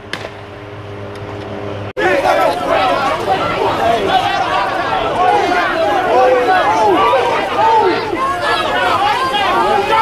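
A low steady hum for about two seconds, then a sudden cut to a dense crowd of many people talking over each other.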